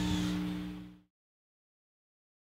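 A steady low hum with two held tones fades out over about a second, then cuts to complete silence.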